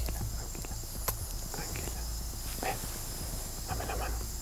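A few soft footsteps and knocks as a woman in heels walks to a bench and sits down. Brief murmured voices and a steady faint high hiss run underneath, over a low, fading music bed.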